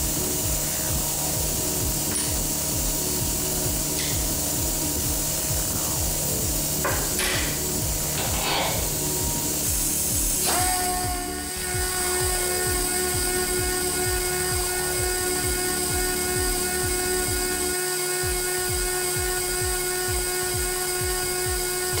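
Microcable blowing machine running steadily, its twin belt drive pushing fibre-optic microcable into the duct with compressed air; a steady mechanical drone with held tones, whose pitch mix changes about ten seconds in.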